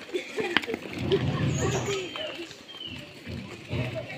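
Indistinct talk from several people walking together, with a sharp click about half a second in.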